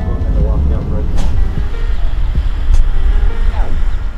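Low, steady rumble of a patrol car driving, heard from inside the cabin, with faint voices over it.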